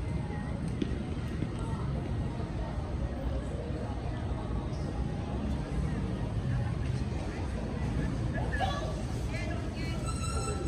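Busy street ambience: a steady low hum of city traffic with the voices of passers-by in the background, and a short stretch of nearby talk near the end.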